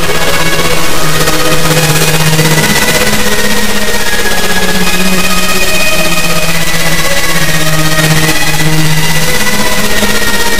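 Fast hardcore/speedcore electronic music: a dense, rapid distorted beat under a synth line that steps between a few pitches every second or so.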